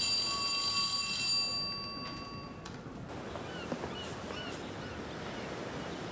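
A bell's single ring fading out over the first two and a half seconds, then a quiet background with a few faint chirps.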